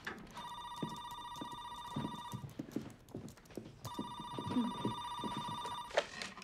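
Corded landline telephone ringing twice, each trilling ring about two seconds long with a short gap between them. Footsteps sound underneath.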